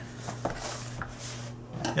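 A cardboard product box being handled and set down on a wooden table, giving a few light knocks and rubs over a steady low hum.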